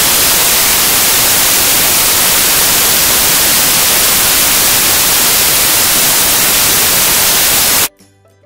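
Loud, steady static hiss from a camera recording fault, drowning out everything else and cutting off suddenly near the end.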